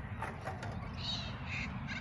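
A bird calling three short times, from about a second in to near the end, over a steady low rumble.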